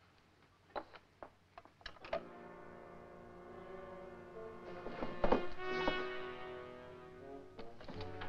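A few sharp clicks and knocks as a rotary desk telephone's handset is hung up. Orchestral film score with brass then comes in about two seconds in and swells.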